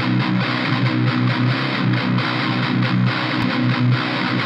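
Distorted electric guitar playing a fast, repeating hardcore riff as the song's intro.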